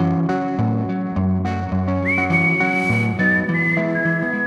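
Blues band playing: an electric guitar riff repeating over a drum kit, with a whistled melody entering about halfway, one high held note that swoops up at its start and then steps down to a lower one.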